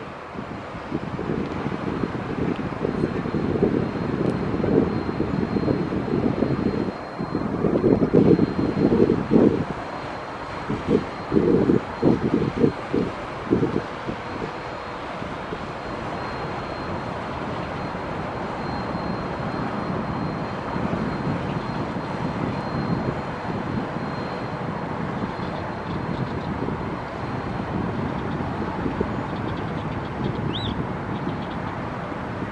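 Fireboat's engines droning as it runs past at speed, with the wash of its wake and wind buffeting the microphone in heavy gusts through the first half, then a steadier drone.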